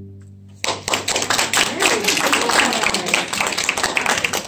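The last note of two cellos fades out. About half a second in, applause starts: a small audience clapping, dense and steady.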